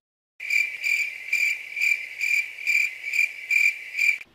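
Cricket-chirping sound effect, the comic 'crickets' cue for an awkward silence: one steady high chirp pulsing about twice a second. It starts abruptly after a moment of dead silence.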